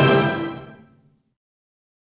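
Orchestral film score ending on a long held final chord, which fades away within about the first second.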